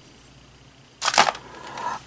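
Quiet room tone, then about a second in a short, light clatter of a small electronic sensor board being set down in a plastic parts organizer.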